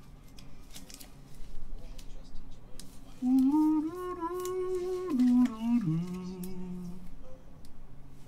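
A man humming a short tune of a few held, stepping notes, starting about three seconds in and ending near seven. Throughout there are light clicks and taps of a trading card being handled and fitted into a clear plastic holder.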